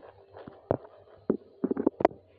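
A few short knocks and clicks, one under a second in, another a little later and a quick cluster near the end, over a faint low hum.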